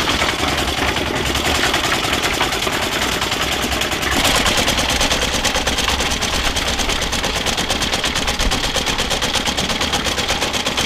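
Portable concrete mixer running, a fast, even pulsing from its drive that carries on without a break while cement is tipped into the drum.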